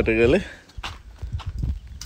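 A person's voice that breaks off shortly after the start, followed by a few soft, low knocks like footsteps on dry ground.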